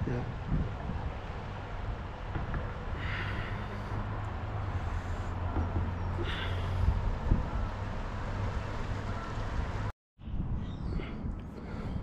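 Steady low outdoor rumble with a hiss over it, cut off abruptly near the end and followed by quieter ambience.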